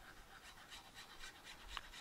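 Near silence: faint rustling and light ticks of cardstock being handled while glue is squeezed along a paper flap.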